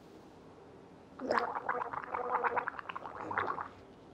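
A man gurgling wetly in his throat for about two and a half seconds, starting about a second in, a rapid bubbling rattle carried on a low voice.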